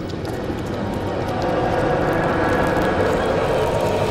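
Sound effect of slime oozing over and engulfing a car: a dense, steady, crackling and squelching texture that swells slightly around the middle.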